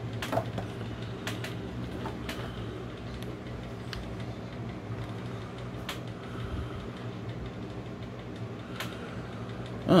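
A steady low background hum, with a few light clicks and taps scattered through it as a plastic action figure is handled.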